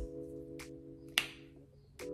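Background music: a held guitar-like chord ringing and fading away, with a faint click about half a second in and a sharper click a little past a second in.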